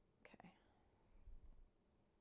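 Near silence: room tone, with a faint short sound about a quarter of a second in and a soft low rumble a little past the middle.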